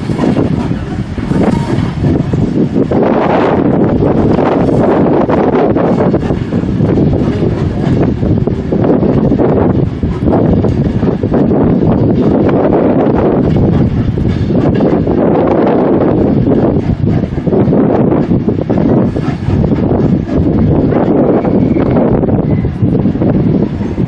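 Wind buffeting the microphone in irregular gusts, with a departing steam-hauled train running beneath it as it moves away.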